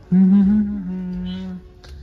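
A man humming one long "hmm" for about a second and a half, its pitch dropping a little halfway through.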